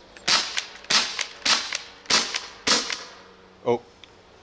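Shots from a rifle built from two CO2-powered BB pistols mounted side by side: five sharp pops, about one every half second, stopping after nearly three seconds as the gun runs empty.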